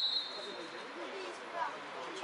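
Referee's whistle: one short, shrill blast of about half a second right at the start, the signal that the penalty kick may be taken.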